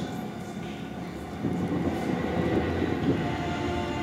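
A low, steady rumble with faint held tones above it, growing louder about a second and a half in.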